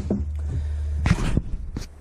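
Handling and movement noise: light rustling and a few short knocks, about a second in and again near the end, over a steady low hum.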